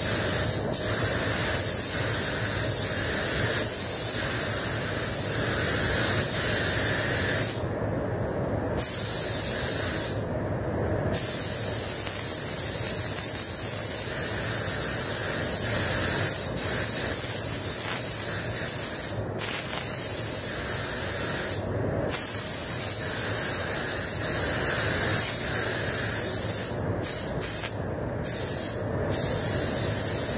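SATA RP spray gun spraying clear coat on compressed air at about 2 bar: a steady airy hiss in long passes. The top of the hiss drops out briefly when the trigger is let off, at about 8, 10, 19 and 22 seconds and a few times near the end.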